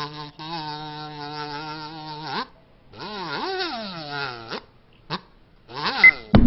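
Cartoon fly buzzing: a steady buzz with a slight waver for about two seconds, then after a short pause a buzz that swoops down and up in pitch several times. A couple of short clicks follow near the end.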